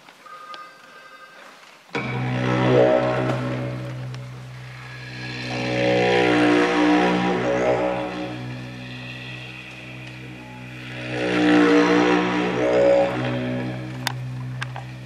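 Didgeridoo played with a steady low drone that starts abruptly about two seconds in. Its overtones swell and fade in slow waves, loudest shortly after it starts, around the middle and near the end.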